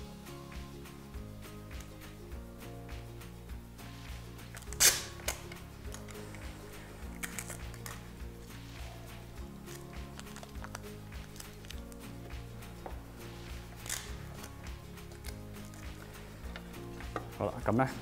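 Soft background music under packing tape being pulled off its roll and pressed onto a screen-printing frame, with one short, loud rip of tape about five seconds in and a smaller one later.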